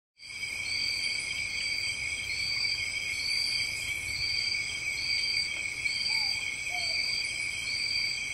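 Night insect chorus: crickets trilling steadily at several high pitches, one of them calling in a short repeated phrase about once a second.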